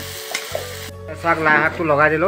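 Vegetables sizzling as they fry in an iron wok over a wood fire, with background music; about a second in the sizzle cuts off and a singing voice in the music comes up.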